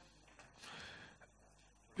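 A man's quick, soft breath intake in a pause between sentences, about half a second long. At the very end comes a sharp pop as the next word starts.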